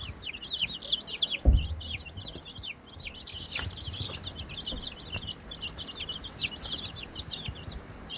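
A brooder full of young chicks peeping continuously, many short high falling peeps overlapping one another. A low thump about a second and a half in.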